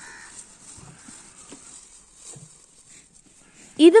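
A cow eating chopped green fodder from a feeder: faint, scattered tearing and chewing sounds. A man's voice starts just before the end.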